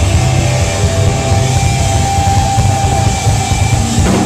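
Live rock band playing loud, with distorted electric guitars, bass and drums, and a long high note held from about a second in until near the end.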